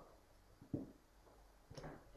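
Wooden xylophone bars being lifted off the frame and set down. The bars give two faint, short knocks, one about three-quarters of a second in and a weaker one near the end, in an otherwise quiet room.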